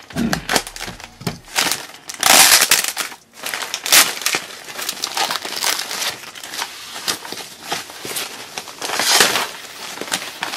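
White plastic packaging wrap crinkling and rustling as it is pulled open and unfolded by hand, in uneven bursts, loudest about two and a half seconds in, at four seconds and near nine seconds.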